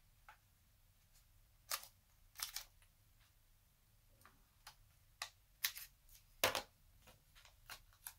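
Quiet handling of a sheet of foam adhesive dimensionals on a craft table: about half a dozen scattered light clicks and taps, the loudest about two-thirds of the way through.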